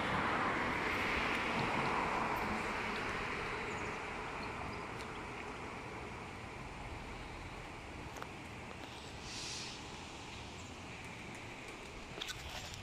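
Outdoor ambient noise: a broad rushing hiss, loudest over the first few seconds and slowly fading, with a short hiss about nine and a half seconds in.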